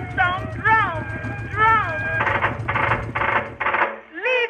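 An old-time music recording with a sliding, voice-like melody, ending in four short harsh bursts. Underneath runs a steady low boat-engine drone that stops just before the end.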